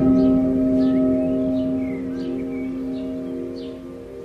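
Meditation music: a singing bowl struck once at the start, its tone ringing on and slowly fading. Faint short high chirps sound above it throughout.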